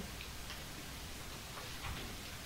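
Faint room tone: a steady low hum and hiss, with a few faint ticks.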